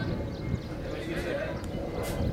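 Wind rumbling on the microphone, with faint distant shouts from players on the cricket field.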